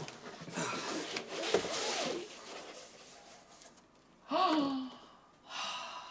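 Cardboard box rustling and scraping as a large framed print is pulled out of it. About four and a half seconds in comes a woman's loud gasp of delight, a voiced 'ooh' falling in pitch, then a breathy sigh.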